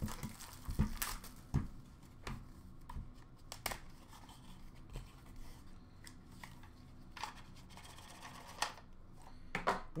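Faint handling of a cardboard trading-card box and its plastic packaging: scattered light taps, clicks and rustles as the box is opened and its contents pulled out.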